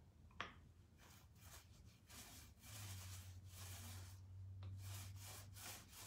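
Foam sponge roller rolled back and forth through wet chalk-mineral paint on a flat wooden table top: faint, soft swishing strokes, about two or three a second, with a small click near the start.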